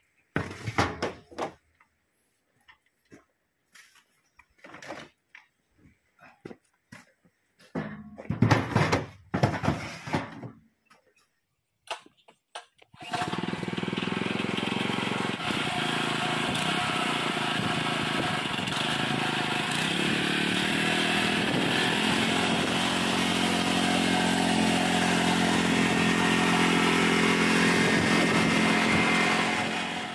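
A few scattered knocks and clatters of plastic harvest crates being handled. About thirteen seconds in, the small engine of a motorized farm cart comes in suddenly and runs steadily and loudly to the end.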